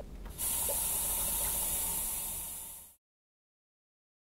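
Wall suction hissing steadily as it draws air through the tubing of an Atrium Oasis dry-suction chest drain just hooked up to it; the hiss starts suddenly about half a second in and fades away about three seconds in.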